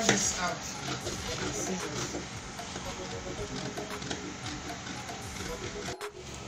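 Indistinct voices in the background with no clear words, over a steady low level of room noise.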